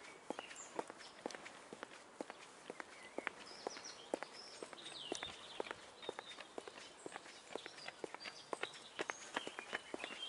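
Footsteps on brick paving at a steady walking pace, about two steps a second, with birds chirping in the background.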